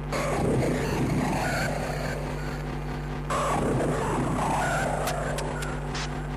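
Hardcore techno from a DJ mix: harsh, distorted noise textures over a steady low pulse, with an abrupt change in the sound about three seconds in.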